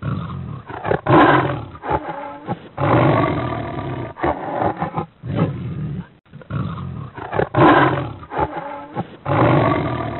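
Tiger roaring in a series of deep, rough calls with short breaks between them, the loudest about a second in and again near eight seconds.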